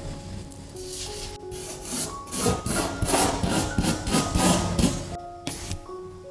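Plastic spoon rubbing and scraping coloured sand across sticker paper in a run of quick strokes, starting about two seconds in and stopping near the end, over soft background music.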